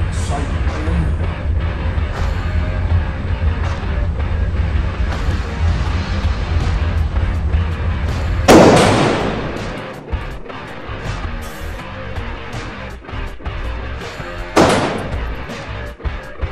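Two single shots from a Romanian AK-47-pattern rifle, about six seconds apart, each ringing out with a reverberant tail in an indoor range; the first shot is the louder. Background music plays underneath.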